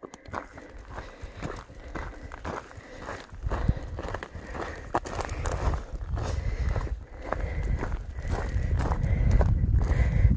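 A hiker's footsteps on a dry dirt trail, about two steps a second, with a low rumble that grows louder in the second half.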